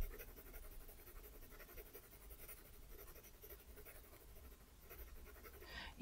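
Faint, rhythmic scratching of an HB graphite pencil stroked quickly back and forth on sketchbook paper, held near its end with light pressure to lay down an even, light layer of shading.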